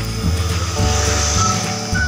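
Background music with a repeating low bass pulse and short melody notes.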